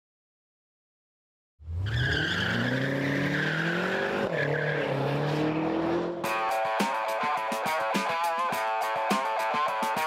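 After a second and a half of silence, a car engine revs hard with its tyres squealing. Its note rises, drops once as it changes gear and rises again. About six seconds in it gives way to music with a driving beat.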